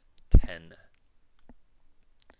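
Computer mouse clicking: a sharp, loud click-thump about a third of a second in, then a faint single click about a second and a half in.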